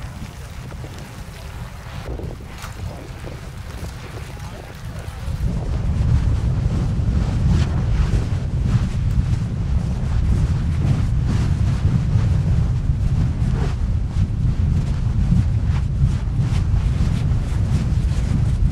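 Wind buffeting the microphone with a deep rumble beside an erupting lava fissure, louder from about five seconds in, with scattered crackles from the lava.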